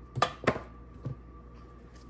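Two sharp knocks in quick succession near the start, then a softer one about a second in: spice containers being set down and picked up on a kitchen counter.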